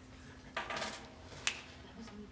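Dry-erase marker being handled at a whiteboard: a short hard clatter about half a second in, then one sharp click about a second and a half in.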